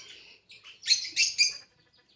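A short cluster of high-pitched bird chirps about a second in, lasting under a second.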